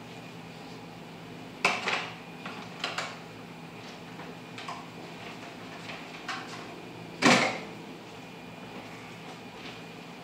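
Kitchen clatter of utensils and containers being handled: a few sharp knocks and clicks, with the loudest about seven seconds in.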